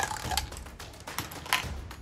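A marble clattering down the plastic track and tubes of a K'NEX marble coaster: a quick, irregular run of small clicks and rattles, with a sharper click about one and a half seconds in. The marble is taking its new route through the tube as intended.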